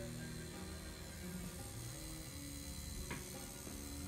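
Low, steady hum of an Axys rotary tattoo machine running as it needles permanent eyeliner into an eyelid, under faint background music.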